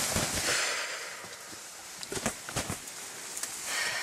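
Feathers rustling and wings beating on a just-killed rooster held upside down by its legs, the reflex flapping that follows killing, with a few sharp clicks in the middle. The rustling is strongest in the first second and returns near the end.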